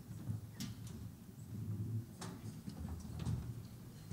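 A few scattered soft knocks and clicks of people moving and handling things at a lectern, over a low room hum.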